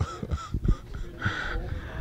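Quiet, breathy laughter in a few short bursts at the punchline of a story, with no clear words.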